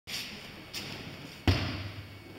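Sudden knocks and a heavy thud as an aikido partner steps in on dojo training mats and is taken into an arm pin. There are two lighter taps, then the loud, low thud about one and a half seconds in.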